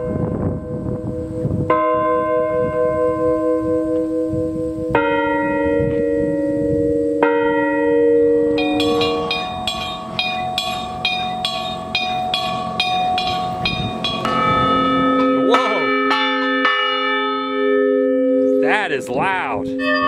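Large cast farm and school bells rung one after another, each strike ringing on with long, overlapping tones. From about halfway through a higher-pitched bell is struck rapidly, about twice a second, then a deeper bell takes over and rings out.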